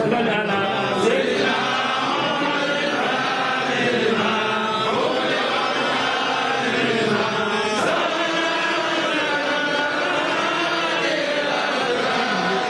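A crowd of voices chanting together in one continuous religious chant, many voices layered and rising and falling without pause.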